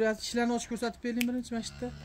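A man's voice talking, quieter than the close speech around it, with a brief low steady hum near the end.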